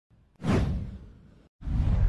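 Two whoosh transition sound effects with a deep low boom under each. The first starts about half a second in and sweeps downward, then cuts off; the second begins right after.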